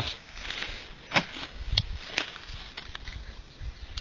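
Rustling and light footsteps in dry straw stubble as shot pigeons lying on it are handled and picked up, with a few sharp clicks around the middle.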